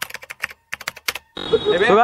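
Keyboard typing sound effect: a quick, irregular run of key clicks for about the first second, then a man starts talking near the end.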